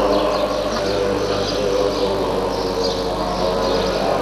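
Tibetan Buddhist monks chanting together in a low, steady drone of many held voices, with faint high chirps over it around the middle.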